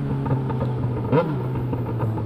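Straight-piped inline-four motorcycle engines running steadily at cruising speed, with a brief rev that rises and falls in pitch a little past a second in.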